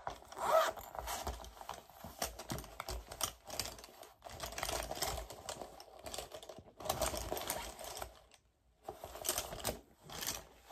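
Makeup products and their packaging being handled: irregular rustling with quick clusters of small clicks and taps, in bursts with short pauses between them.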